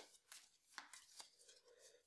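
Faint, scattered clicks and rustles of a deck of game cards being shuffled by hand.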